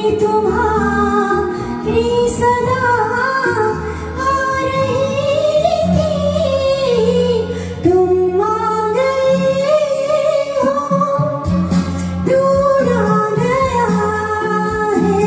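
A woman singing a Hindi film song into a microphone over an instrumental backing track, with long held notes that rise and fall.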